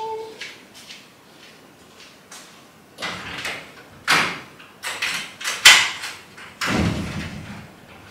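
A run of sharp knocks and bumps, the loudest about two-thirds of the way in, followed by a deeper scraping rustle, as of household things being handled and moved about.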